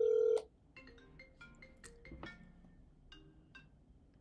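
A phone sounding for an incoming call. It opens with a loud electronic beep lasting under half a second, followed by a quick run of short electronic notes in a ringtone melody.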